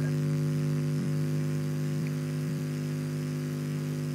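Steady electrical mains hum with a buzzy edge, carried on an open microphone in a video call, holding at an even level throughout.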